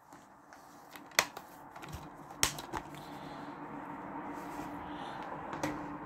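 Plastic DVD case being handled: a few sharp clicks, the loudest about a second in and more around two and a half seconds in, over low rustling, with a faint steady hum in the second half.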